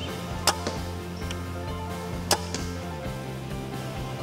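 Mission Sub-1 XR crossbow firing twice: two sharp snaps about two seconds apart, each followed by a fainter knock, over background music.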